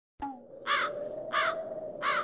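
Crow cawing as a cartoon sound effect: short caws about two-thirds of a second apart, the third starting at the very end, over a faint steady hum.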